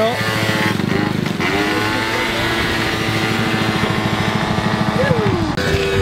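Small two-stroke moped scooter engine running close by, with rapid even exhaust pulses and a rise in revs about a second in.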